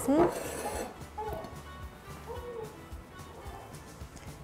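A ceramic bowl clinks once against a plate right at the start as the shaped rice is turned out. After that, quiet background music.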